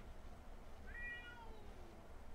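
A domestic cat meowing once, a single faint call of about a second that rises quickly, holds, then falls away in pitch.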